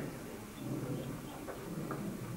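Indistinct voices of people talking in a large room, with a couple of faint light clicks near the end.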